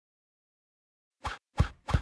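Three soft, low thuds about a third of a second apart, starting after a second of silence: cartoon sound effects of books dropping one by one onto a pile.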